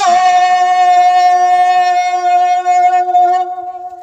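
A woman singing into a handheld microphone, holding one long steady note for about three and a half seconds before it fades away near the end.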